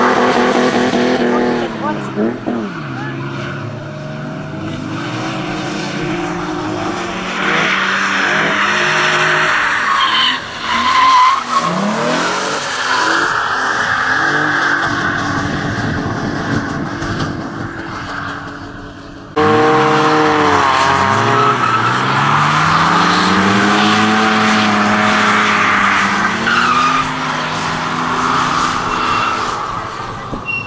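BMW E36 drift cars sliding through corners, their engines revving up and down while the tyres squeal. The sound cuts abruptly about two-thirds of the way in and comes back straight away.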